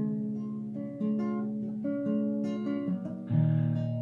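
Classical guitar playing slow picked chords, a new chord sounding about once a second and ringing on, with a strummed chord a little over three seconds in.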